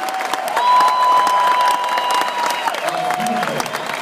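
A large arena crowd applauding and cheering at the end of a concert song, a dense wash of clapping. A single long held high note rises over the clapping for about two seconds.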